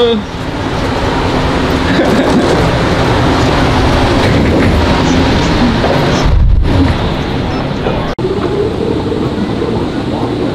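Loud, steady airport-terminal ambience: a continuous rush of noise with indistinct crowd voices. A brief low rumble comes about six and a half seconds in, and the sound drops out for an instant a little after eight seconds.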